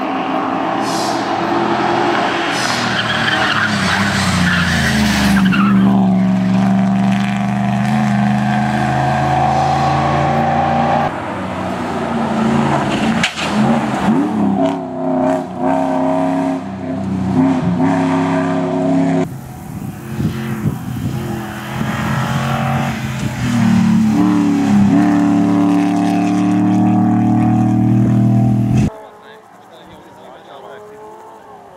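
Historic rally cars driven flat out past the roadside, among them a 1978 5-litre Mercedes V8: engines held at high revs with their pitch shifting as they change gear, and tyres sliding on loose gravel. The sound jumps between passes and drops away abruptly near the end.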